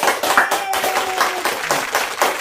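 Several people clapping their hands together in a quick, uneven patter of claps.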